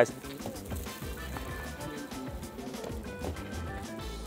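Soft background music with light instrumental notes, well below the level of the speech around it.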